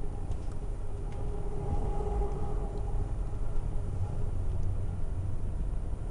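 Ride noise inside a moving Amtrak Coast Starlight passenger car: a steady low rumble of wheels on rail, with a faint steady hum over it.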